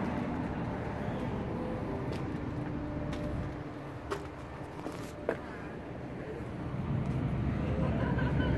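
Steady low rumble of road traffic outdoors, with a few faint clicks around the middle, and the rumble growing a little louder near the end.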